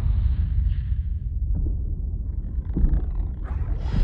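Deep, low rumble of cinematic sound design, held steady, with a few faint knocks in the second half.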